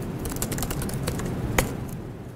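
Typing on a laptop keyboard: a quick run of keystroke clicks, with one louder keystroke near the end.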